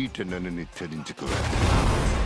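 Film trailer soundtrack: a man says a short line of dialogue, then about a second in a loud movie explosion breaks in with a deep rumble.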